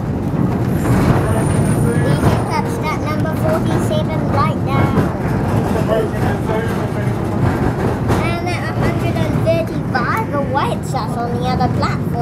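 Vintage electric tram running along its track, a steady low rumble with people's voices talking over it.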